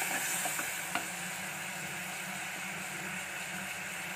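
Prawns and onions sizzling in hot oil in a pot while a wooden spatula stirs them, with a few light knocks of the spatula in the first second, then a steady sizzle.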